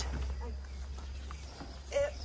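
Faint, broken bits of a voice over a steady low hum, with a brief louder sound right at the end.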